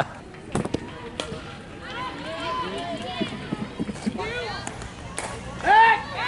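Voices of softball players and spectators calling out across the field, with two sharp clicks about half a second and a second in, and one loud call near the end.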